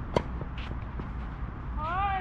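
A tennis racquet striking the ball once, a sharp crack about a fifth of a second in. Near the end a short call rises and falls.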